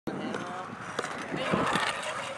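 BMX bike tyres rolling on skatepark concrete, with a sharp click about a second in and faint voices in the background.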